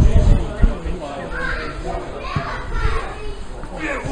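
Distant shouts of footballers calling to each other across an outdoor pitch during a set piece, with low rumbling thumps in the first second.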